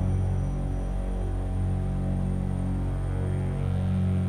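Helicopter in flight heard from inside the cabin: a steady low hum made of several level tones, with music underneath.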